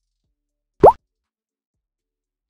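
A single short, quick upward-sliding "plop" sound effect, heard once a little under a second in, with silence around it.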